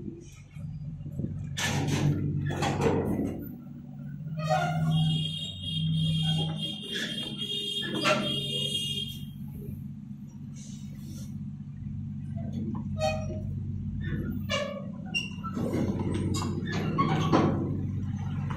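Diesel engine of a flatbed trailer truck running as the truck reverses slowly, a steady low drone. A high-pitched tone sounds for about five seconds midway.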